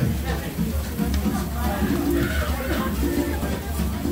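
Background music with a strong, pulsing bass, mixed with people talking.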